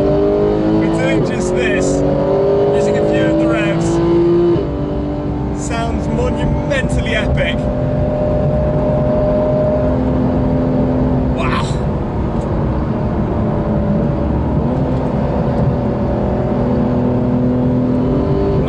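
Porsche 911 GT3's naturally aspirated flat-six engine heard from inside the cabin under hard acceleration, its note climbing in pitch, then dropping with a quick PDK upshift about four and a half seconds in before pulling on at high revs.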